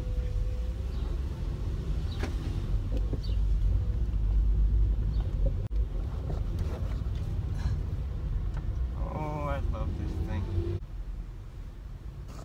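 Low, steady engine and road rumble inside the cabin of a 2006 Volkswagen Jetta being driven, with a few light clicks and knocks from the interior.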